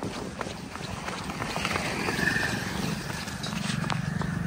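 Footsteps on a paved road, heard as irregular light clicks, while a motorcycle's engine hum grows louder in the second half as it approaches.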